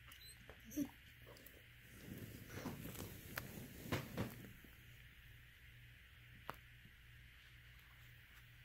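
A dog gives a short, soft whine about a second in, complaining that the petting has stopped. Then comes a couple of seconds of close rustling as a hand goes back to stroking its fur, and a single click later on.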